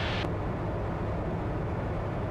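Steady drone of a Comco Ikarus C42C ultralight's engine and propeller in cruise flight, heard inside the cockpit. A brighter hiss on top drops away about a quarter of a second in.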